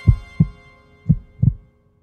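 A low heartbeat sound closes out a hip-hop track: two double thumps (lub-dub) about a second apart over the fading last tones of the music. It goes silent shortly before the end.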